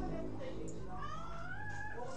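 A single high, drawn-out cry that rises in pitch, starting about a second in and lasting about a second, over a low steady hum.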